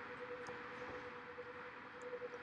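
Faint room tone from the recording microphone: a low hiss with a thin, steady hum.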